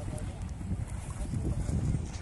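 Low, buffeting rumble of wind on the microphone, with faint voices underneath.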